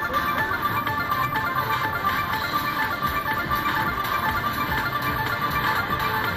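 Crazy Money Gold slot machine playing its electronic music as the bonus wheel spins.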